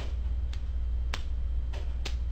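A few sharp plastic clicks of fingers flicking at a Lego walker's flick-fire missile. The loudest comes about a second in, over a steady low hum.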